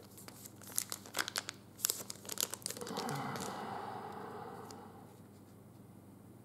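Foil trading-card pack wrapper crinkling in the hands: a quick run of sharp crackles for about two seconds. These are followed by a softer, steady rustle that fades away.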